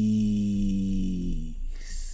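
A man's low voice drawing out the word "peace" as one long, steady held note that fades. It ends with a short hiss of the final "s" near the end.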